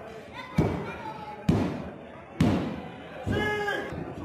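Three sharp, evenly spaced slaps on a wrestling ring's canvas, about a second apart and echoing in the hall: a referee's count on a pin. A voice shouts near the end.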